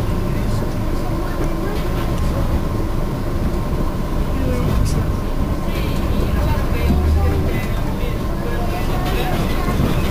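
Cercanías commuter train running at speed, heard from inside the carriage: a steady low rumble of wheels on the track with a few faint clicks. People's voices talk in the background, clearer past the middle.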